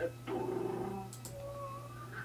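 A low, steady hum with faint held pitched tones over it.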